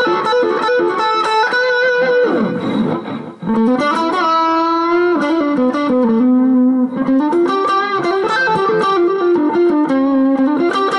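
Dean Vendetta electric guitar playing a lead line of single notes. About two seconds in, the pitch dives steeply down, dips briefly in level, and swoops back up, then the line moves on through held and sliding notes.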